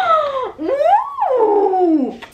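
A woman's drawn-out, sing-song exclamation of delight in two long gliding sounds: the first falls, and the second rises high and then slides slowly down.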